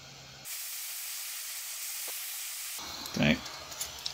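Hot-air tool blowing a steady hiss of hot air onto an earbud circuit board to reflow its solder. The hiss starts abruptly about half a second in and cuts off abruptly a little before three seconds.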